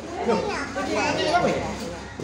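Several people talking over one another at once, a lively babble of overlapping voices with no single speaker standing out.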